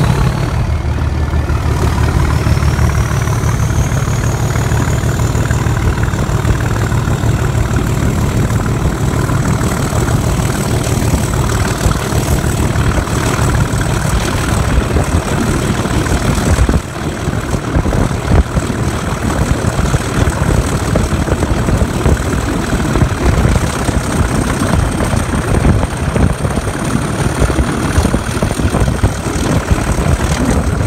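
Class 37 diesel locomotive's English Electric V12 engine working hard under power as it pulls away, heard close alongside the engine room. A high turbocharger whistle rises in pitch over the first few seconds and then holds steady, with a brief dip in level about halfway through.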